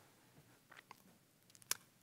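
Near silence in a brief pause in speech, broken by a few faint small mouth clicks and one sharper click from the lips parting just before talking resumes.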